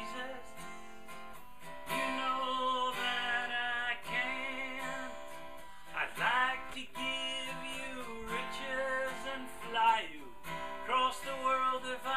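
A cutaway acoustic guitar strummed in steady chords, with a man singing along.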